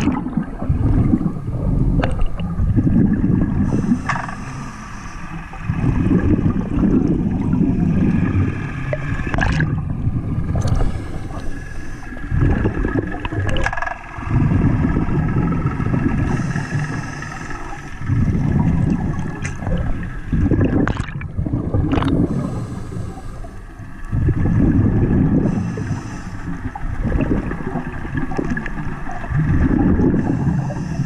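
Muffled underwater sound picked up by a submerged camera: a low rumbling water noise that swells and fades every few seconds, over a faint steady whine, with a few sharp clicks.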